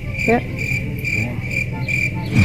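High-pitched, cricket-like chirping, repeating evenly about four times a second over a low rumble.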